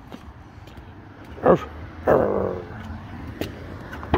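A dog barks twice: a sharp bark about a second and a half in and a second, falling bark just after it.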